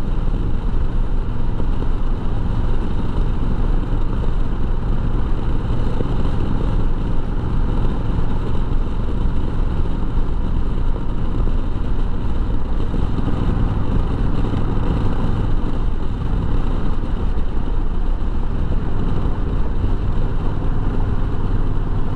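Ride sound of a 2021 Honda Rebel 1100 DCT, its 1084 cc parallel-twin engine running steadily at road speed, mixed with wind rushing over the helmet-mounted microphone.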